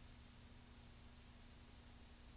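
Near silence: a steady low hum under faint hiss.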